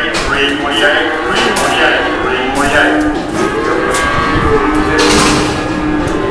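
Cattle mooing in crowded sale pens, with one long low moo near the end, over a background din of voices and occasional sharp knocks.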